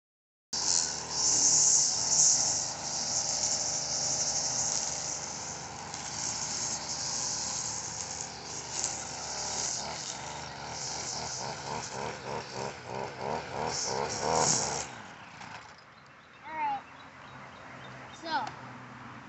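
Stihl FS 45 string trimmer's two-stroke engine running at high speed as its line cuts grass, revved up and down in quick pulses near the end, then shut off suddenly about fifteen seconds in.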